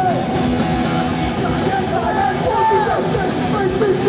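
Punk rock band playing live at full volume, the singer's shouted vocals over drums and the band, his voice sliding down in pitch on some lines.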